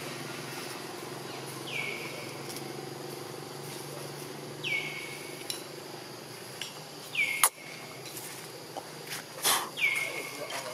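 A bird calling over and over, each call a note that slides down and then levels off, repeated about every two and a half seconds. A sharp click about seven seconds in, and a short scraping burst near the end. A faint steady low hum runs underneath.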